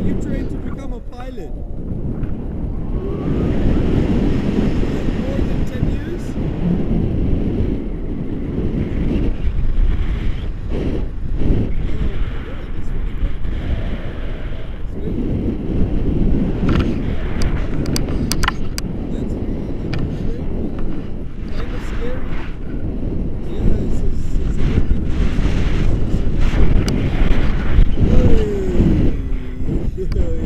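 Wind buffeting the camera's microphone in flight under a tandem paraglider, a loud steady low rushing with scattered small knocks.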